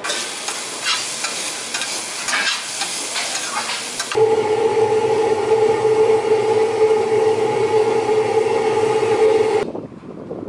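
Diced vegetables sizzling in oil in a stainless steel frying pan, stirred and scraped with a spatula, with many small crackles. About four seconds in this gives way abruptly to a louder steady machine hum with a mid-pitched tone, which cuts off just before the end.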